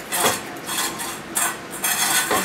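Thinning shears snipping through a Brittany's neck fur: a few quick metallic snips, roughly every half second, as the coat is tipped and blended.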